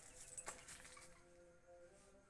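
Near silence: faint outdoor room tone with a single sharp click about half a second in, and faint steady tones under it.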